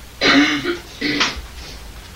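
A person coughing to clear the throat, twice: a loud rough burst just after the start and a shorter one about a second in.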